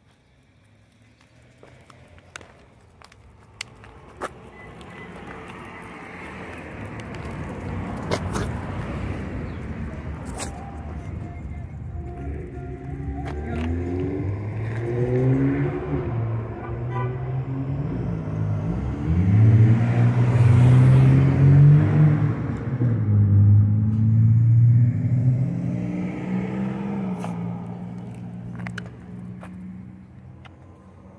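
A motor vehicle's engine passing on the street. It builds slowly from faint, rises in pitch in several steps as it speeds up, is loudest about two-thirds of the way through, then fades away. A few light clicks come early on.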